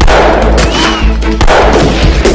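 Two loud gunshot sound effects about a second and a half apart over the film's background music, with a short whistling tone between them.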